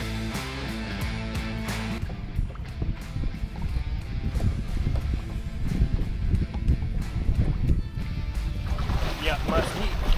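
Background music that stops about two seconds in, giving way to an irregular low rumble of wind on the microphone and water around a small fishing boat. A man's voice calls out briefly near the end.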